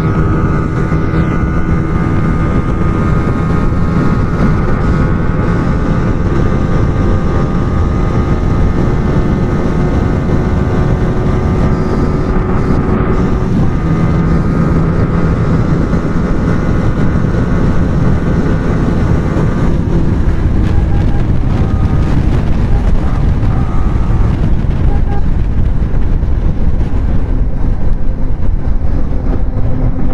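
Small single-cylinder sport motorcycle engine held at high revs in sixth gear at top speed, a steady note under heavy wind buffeting on the microphone. The note shifts slightly a couple of times around the middle.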